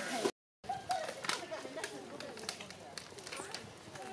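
Several people talking at a distance, with scattered short clicks and crackles. The sound cuts out completely for a moment just after the start.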